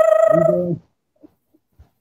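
A man's voice holding a long, drawn-out call as a greeting, overlapped briefly by a lower voice; both stop a little over half a second in, leaving a pause with a few faint clicks.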